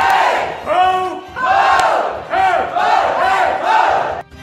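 A group of people shouting together in a loud, rhythmic chant: about seven shouts in a row, each rising and falling in pitch, with short breaks between them.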